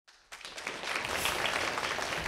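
Audience applauding: a steady spatter of many hands clapping that comes in about a third of a second in.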